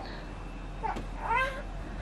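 A newborn baby giving two short, high-pitched rising cries, one about a second in and a slightly longer one just after.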